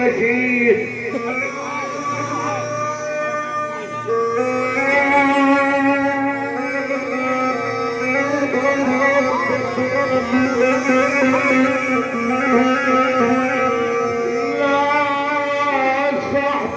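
Live folk music: a single melodic instrument plays long, sustained, slightly wavering notes, stepping up to a higher pitch about four seconds in.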